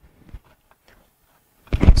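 Near silence with a faint click, then a loud low thump near the end as a man starts speaking.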